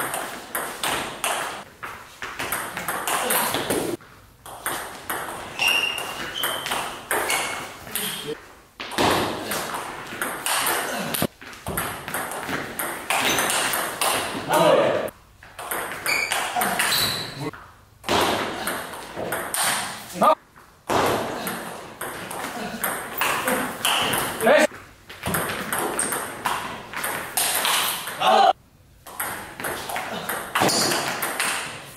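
Table tennis rallies: the ball clicking in quick alternation off the bats and the table, with short pauses between points.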